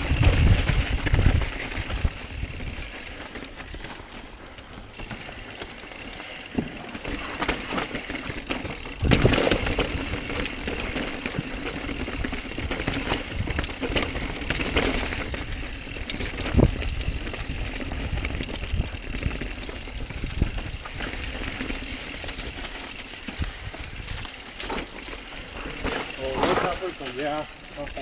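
Mountain bike riding down a dirt trail: continuous tyre and drivetrain noise with sharp knocks from hits on the trail, and gusts of wind on the microphone near the start and around nine seconds in.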